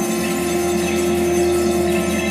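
Electronic music: a sustained synthesized drone holding one steady low pitch, with a shimmer of steady high tones above it.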